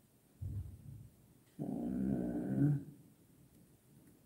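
A man's low, closed-mouth vocal sounds: a short grunt, then a longer hum lasting about a second.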